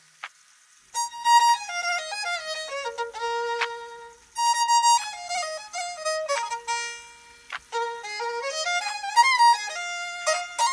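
Violin music: after a brief pause, a quick melody starts about a second in, running in fast steps of notes down and back up.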